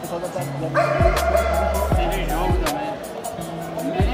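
Background music: a track with a steady beat, deep bass notes that slide downward in pitch, and a voice over it.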